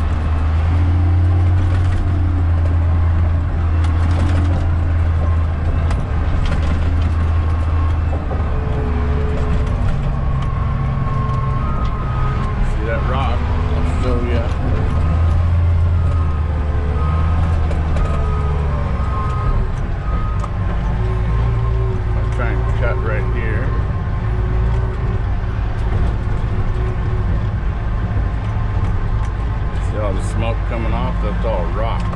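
Caterpillar D10T bulldozer's C27 V12 diesel engine running under load as the dozer pushes rock fill, heard from inside the cab: a deep steady drone with higher hums that shift in pitch now and then.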